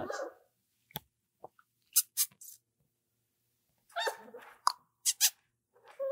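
Five-week-old German Shorthaired Pointer puppy giving a few brief, faint squeaks and whimpers, with soft clicks in between. The sounds come in short, scattered bits, with a small cluster about four seconds in.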